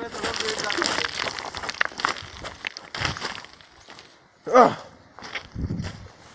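Crunching, scraping footsteps on loose stones and gravel, with fabric rustling close to the microphone, densest in the first two and a half seconds. A short voiced sound from the man comes about two-thirds of the way in.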